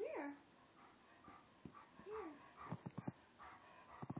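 A large white dog whining: a short whine that rises and falls right at the start, and a softer one about two seconds in, with a few short clicks between.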